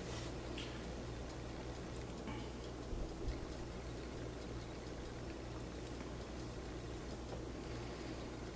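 Quiet hand sewing: faint rustling of cotton cloth and thread as a needle is worked through a pinned seam, over a steady low hum.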